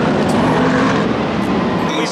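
Race cars' engines running together on the starting grid: a loud, steady mechanical din with a low hum underneath.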